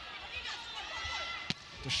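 Volleyball rally on an indoor court: a single sharp smack of the ball being hit about one and a half seconds in, over a steady arena crowd murmur.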